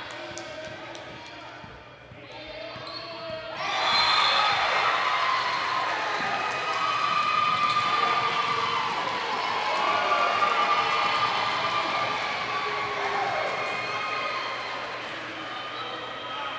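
Basketball bouncing on a hardwood gym floor. From about four seconds in, many voices shout and cheer loudly, easing off toward the end.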